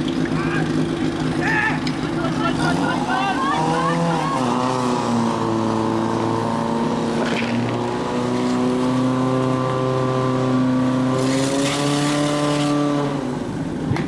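Portable fire pump engine running hard under load while pumping water into the attack hoses. Its pitch climbs a few seconds in, holds steady at high revs, and drops near the end. Voices are shouting over it early on.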